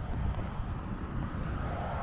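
Wind buffeting the microphone: a steady, uneven low rumble with a light hiss above it.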